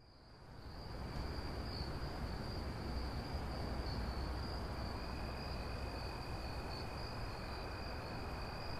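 Night ambience: a steady high insect trill, typical of crickets, over a low rumble, fading in during the first second; a second, lower trill joins about five seconds in.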